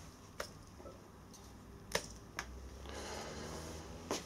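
Faint sharp clicks from the thick steel coil spring of an iHuniu 120 kg power twister as it is bent in the hands: one just after the start and two close together about two seconds in.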